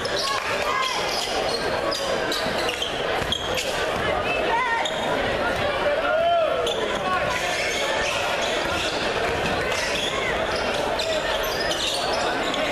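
A basketball being dribbled on a hardwood gym floor, a run of repeated bounces, while the crowd talks and calls out.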